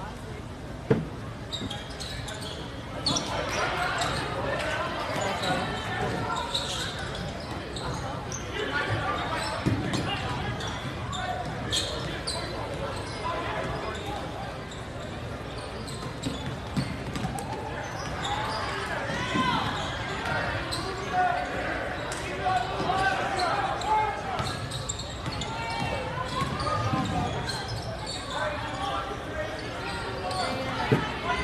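Basketball bouncing on a hardwood gym floor during a game, with sharp impacts, over a bed of spectator voices.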